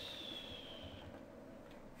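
A few faint computer keyboard keystrokes over low room hiss.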